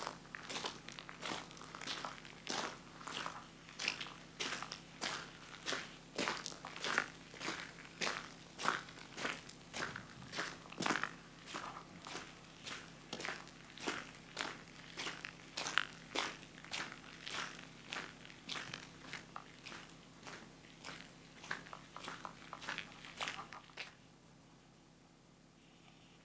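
Footsteps crunching on a wet gravel road at a steady walking pace, about two steps a second.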